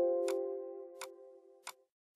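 Windows alert chime sounding as a warning dialog box opens, a single pitched tone fading away over about two seconds. Three sharp mouse clicks sound over it.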